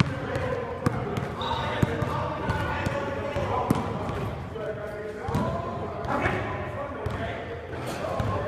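A basketball bouncing now and then during a pickup game, with players' voices calling in the background.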